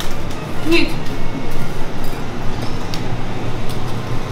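A few light clinks and rattles of dry spaghetti against a glass storage jar and a steel pot, over background music.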